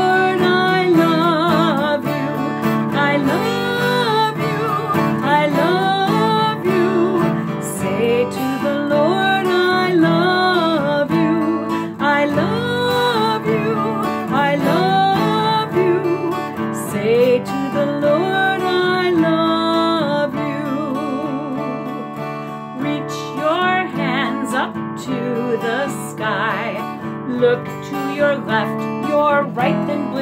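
A woman singing a children's action song while strumming an acoustic guitar, with a clear vibrato on her held notes.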